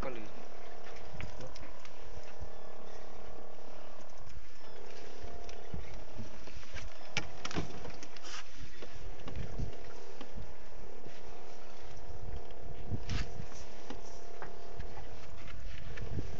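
Boat engine running steadily, with wind gusting on the microphone. A few sharp clicks come about halfway through and again near the end.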